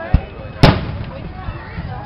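Aerial firework shells bursting overhead: a short dull thump just after the start, then a loud sharp bang about two-thirds of a second in, which is the loudest sound, with a brief ringing tail.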